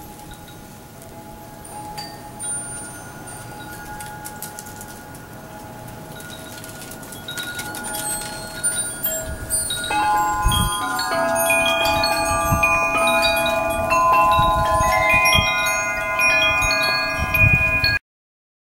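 Wind chimes ringing, sparse at first and then many overlapping notes from about halfway on, with wind gusts rumbling on the microphone at the same time.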